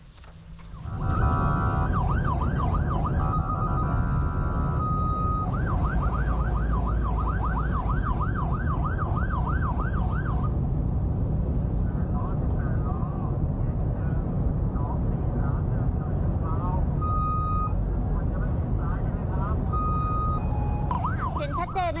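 Ambulance van siren sweeping up and down rapidly, heard from a car following close behind, over steady road and engine rumble; the ambulance is trying to get a truck ahead to yield. The sweeping stops about ten seconds in, leaving the rumble with two short steady tones near the end.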